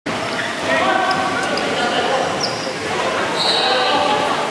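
Dodgeball game in a large, echoing indoor sports hall: players' voices calling out, a ball striking the wooden court, and a brief high squeal near the end.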